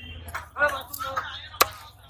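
A large knife chopping through a scaled fish steak into a wooden chopping block, with one sharp strike near the end.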